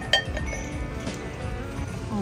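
A single sharp clink of a hard object, with a brief ringing tone, about a tenth of a second in, over background music.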